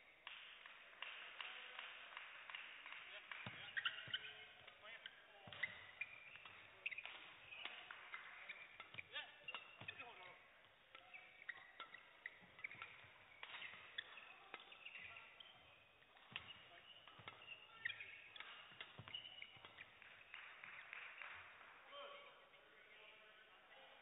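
Badminton doubles rally: rackets strike the shuttlecock in a quick, irregular series of sharp clicks, and shoes squeak in short bursts on the court mat. The sounds are faint.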